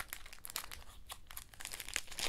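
Soft rustling and crinkling of paper as a paper envelope holding replica lobby cards is handled and the cards are slid out, with a scatter of small ticks.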